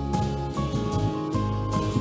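Live church band playing an instrumental passage, with drums keeping a steady beat under bass and held notes.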